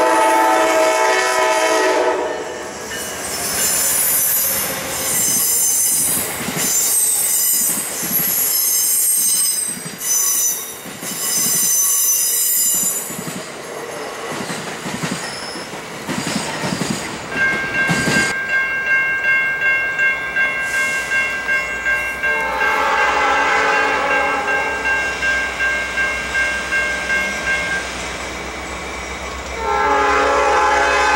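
Passenger train horn sounding a chord at a grade crossing, then high-pitched wheel and brake squeal as the Amtrak train rolls into the station. In the second half a grade-crossing bell rings about twice a second, and a locomotive horn blows again near the end as the next train approaches.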